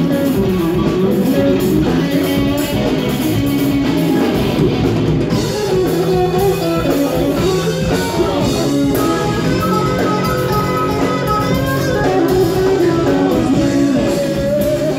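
Live rock band playing loud on electric guitars, bass guitar and drum kit, with no break.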